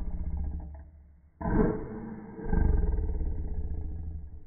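A person making low, rough, rasping growls in the throat. The first trails off within the first second, a short one starts suddenly about a second and a half in, and a longer one begins about halfway through.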